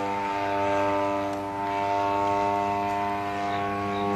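RCGF 55cc two-stroke petrol engine of a giant-scale RC aerobatic plane running in flight, a steady-pitched buzzing drone that swells and fades slightly as the plane moves through the sky.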